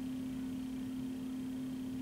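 Room tone: a steady hum with faint hiss.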